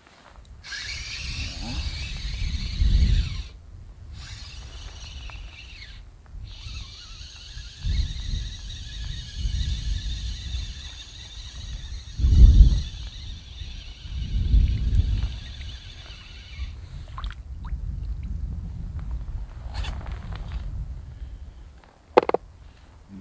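A fixed-spool feeder reel being cranked to bring in a hooked fish: a steady high-pitched whir that pauses briefly twice early on and stops about 17 seconds in. Gusts of wind buffet the microphone throughout, the strongest about 12 seconds in.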